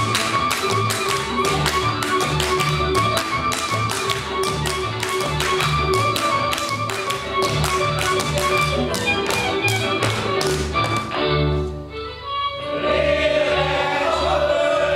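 Hungarian men's boot-slapping folk dance: a quick run of hand claps and slaps on boot shafts, with heel stamps on the wooden stage, over instrumental folk dance music. The slapping stops about three-quarters of the way through, as the music breaks off briefly and a new section begins.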